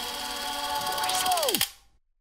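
Audio logo sting: a noisy, buzzing sound effect with held tones that ends in a steep downward pitch slide and cuts off about a second and a half in.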